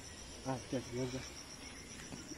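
Insects chirping in a steady, high-pitched, finely pulsed trill, with a short spoken phrase over it about half a second in.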